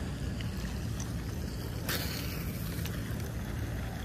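Wind buffeting the microphone in a steady low rumble, with one brief sharp rush of noise about two seconds in.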